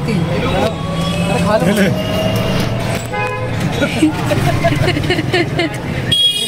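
Street traffic heard from inside a moving rickshaw: a steady low rumble of road and vehicle noise, with a short vehicle horn toot about three seconds in. People are talking over it.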